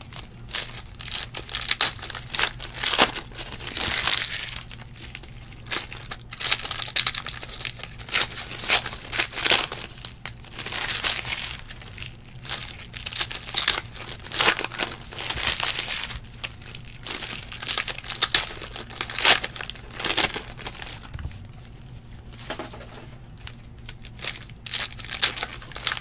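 Foil wrappers of trading-card packs crinkling and tearing as the packs are ripped open by hand, in irregular bursts of crackle.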